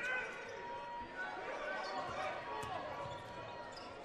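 Basketball being dribbled on a hardwood court, with the voices and shouts of players and crowd in the arena.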